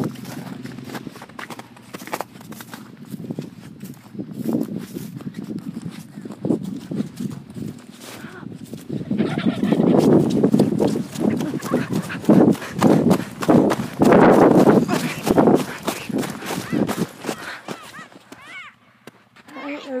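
Footsteps crunching over frozen grass and snow as a person walks toward the turkeys, quickening and getting louder about halfway through, with rustling on the phone's microphone.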